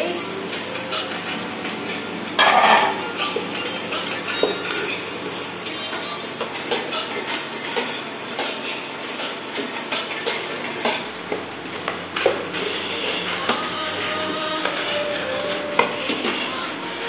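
A steel spatula stirring chopped onions in a stainless steel saucepan, scraping and clinking against the metal, with some sizzling from the frying. The louder scrape comes about two and a half seconds in.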